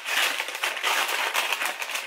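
Paper or plastic packaging crinkling and rustling in the hands, a dense crackle of small clicks that eases off near the end.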